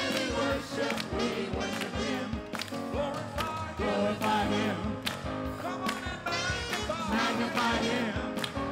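Gospel choir and worship leader singing a praise song together, with instrumental backing and a steady drum beat.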